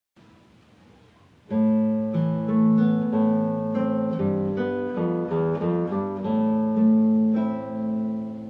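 Solo classical guitar, fingerpicked: after about a second and a half of faint hiss, the piece begins, with melody notes moving over held bass notes.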